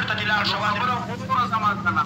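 Speech: a man talking, with a steady low hum underneath.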